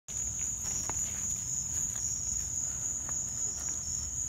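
Steady, high-pitched chorus of evening insects, with a few faint taps.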